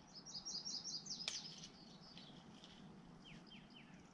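Faint wild birdsong: a quick run of about six short, high repeated notes in the first second, then a few short falling notes near the end.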